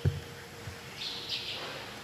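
A quiet pause in the room: a soft knock at the start and another small one, then two brief faint high-pitched rustles about a second in, as the heavy Gospel book is handled and lifted.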